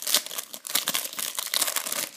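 Foil wrapper of a Panini Euro 2012 trading-card packet crinkling as it is torn open and the cards are pulled out, an irregular crackle of small clicks.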